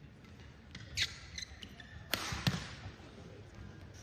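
Badminton rally in an arena: a handful of sharp racket hits on the shuttlecock and shoe squeaks and stamps on the court floor. The loudest hits come about one second in and about two seconds in, followed by a low thud.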